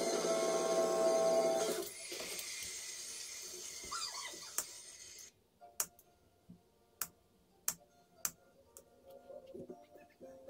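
Background music for about the first two seconds, then fading out. Then about five sharp clicks, roughly a second apart, of fret wire being snipped with fret nippers.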